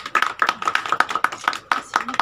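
A small group clapping, the separate claps sharp and uneven, several a second.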